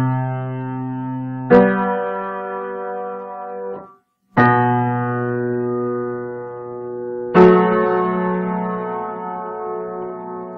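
Solo piano playing slow, held chords: three new chords are struck, about 1.5, 4.4 and 7.4 seconds in, each left to ring and fade, with a brief moment of silence just before the second one. The recording clips on the loudest strikes because of the microphone placement.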